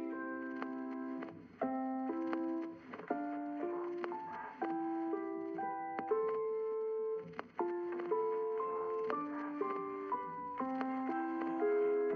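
Instrumental passage of a pop song with no vocal: a piano-like keyboard playing a melody of sustained notes that step up and down.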